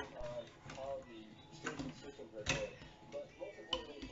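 Plastic Lego bricks clicking and clacking as pieces are handled and pressed together on a model stand, a few sharp clicks with the loudest about two and a half seconds in. Indistinct voices run underneath.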